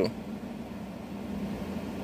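Steady, even background hiss, the kind a running fan or air conditioner makes in a small room, with no clinks or knocks.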